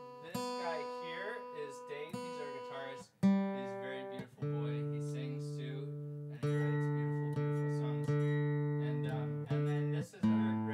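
Guitar chords strummed one at a time, each left to ring and fade before the next, about one every one to two seconds. The ringing chords are longest and fullest in the second half.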